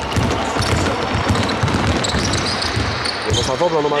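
A basketball being dribbled on a hardwood court, a quick run of repeated bounces, among players' footsteps. A voice comes in near the end.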